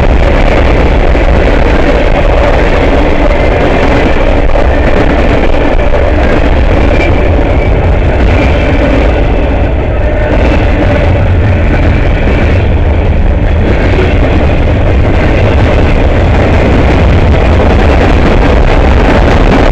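Freight train cars rolling past close by: a steady, loud noise of steel wheels running on the rails.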